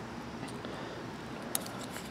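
Light handling clicks over a low background hiss, with one sharp click about one and a half seconds in: a multimeter's metal test probes being set against the spade terminals of an HVAC run capacitor to ohm it out.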